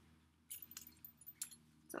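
Metal clasps and hardware on a Louis Vuitton leather crossbody strap clinking lightly as the strap is handled: a scatter of small, faint clinks beginning about half a second in.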